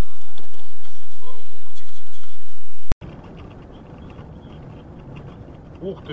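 Faint voices, then a sharp click about three seconds in, after which steady engine and road noise is heard from inside a moving vehicle's cab.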